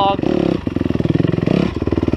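Dirt bike engine running under throttle, ridden on an off-road trail. The revs dip briefly about half a second in and again near the end.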